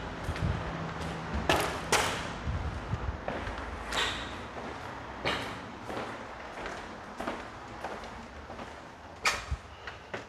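Footfalls and handling knocks from a handheld camera being carried across a wood floor, a few sharp strikes spaced a second or two apart over a low steady hum.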